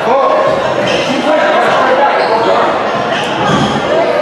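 Indistinct voices of players and spectators echoing in a large indoor gym, with a basketball bouncing on the court.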